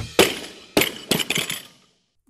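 Logo sound effect: one loud sharp hit, then several fainter sharp hits over the next second or so, each dying away.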